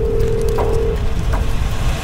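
Loud rushing noise of a blazing fire with a deep rumble, set in suddenly, with a steady tone held over it for about the first second before fading.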